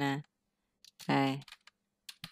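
A few computer keyboard keystrokes, sparse light clicks as a word is typed, with one short spoken syllable about a second in.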